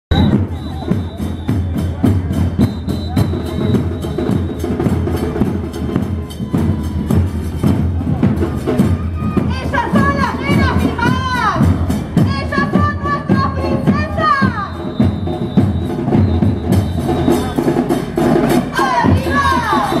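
Murga bass drums with cymbals (bombos con platillo) playing a steady, fast beat of drum strikes and cymbal hits, with high gliding voices or calls over the top around the middle and again near the end.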